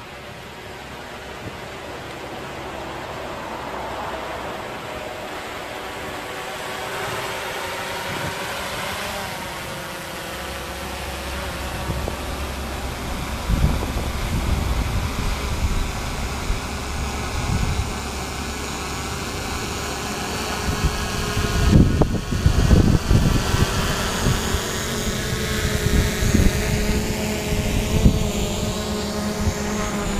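DJI Mavic 2 Pro quadcopter descending to land, its propeller whine growing steadily louder as it comes close. Low rumbling buffets join in from about ten seconds in and are strongest a little past twenty seconds.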